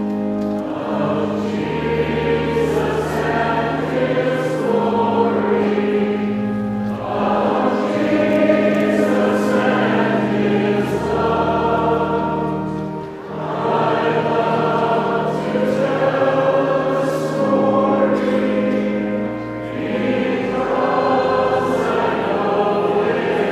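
Choir singing a hymn over a pipe organ, with long held bass notes changing every few seconds beneath the voices.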